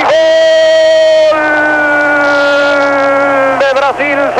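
Football commentator's long drawn-out 'gooool' cry on one held note that sinks slowly in pitch, with a quick break for breath about a second in; ordinary commentary starts again just before the end.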